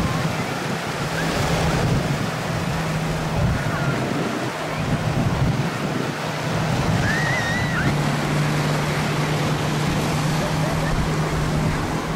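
Small waves breaking on a sandy beach, a steady wash of surf with wind buffeting the microphone and the faint chatter and cries of people on the beach. A low steady hum comes and goes underneath.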